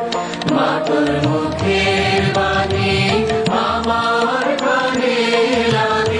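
Voices chanting together in long held, slowly gliding notes over music with a low beat.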